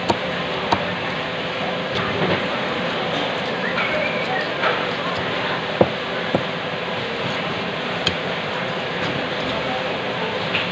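A heavy cleaver striking through a black pomfret onto a wooden chopping block: a handful of separate sharp knocks, the loudest about six seconds in, over steady market chatter and hum.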